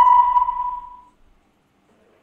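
A single electronic ping, like a sonar or radar blip, ringing out and fading away within about the first second.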